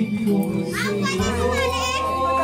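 A crowd of children chattering and squealing over background music with long held notes.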